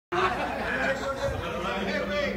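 Indistinct chatter of several people talking at once in a large room; no music is playing.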